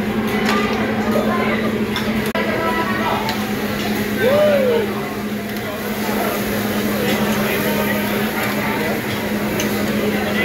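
Metal spatulas clicking and scraping on a flat-top hibachi griddle as chicken and fried rice are cooked, over steady crowd chatter and a constant low hum.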